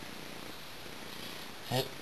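Steady, even background hiss with no distinct sound in it. A voice begins speaking near the end.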